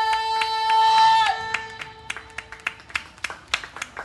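A live band holds a long final note that ends with a falling slide about a second in, followed by scattered hand claps.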